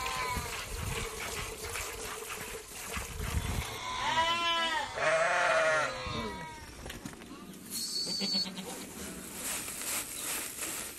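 A flock of sheep and goats bleating in a pen, with several calls overlapping about four to six seconds in and fainter calls before and after.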